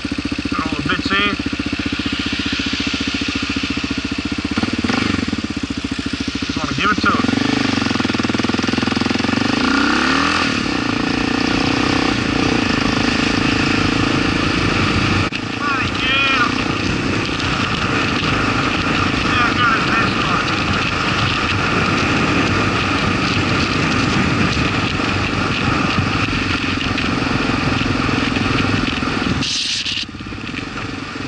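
Kawasaki KLR650 single-cylinder four-stroke motorcycle engine, fitted with a 42 mm Mikuni flat-slide carburettor, idling at a stop. About seven seconds in it revs up and pulls away, then keeps running under throttle while riding. The engine note briefly drops about fifteen seconds in.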